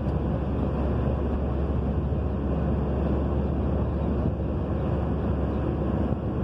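Steady road and engine noise heard inside a car cruising on a paved highway, mostly a deep, even rumble.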